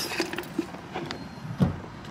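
Faint outdoor car park background with a single short, dull thump about a second and a half in.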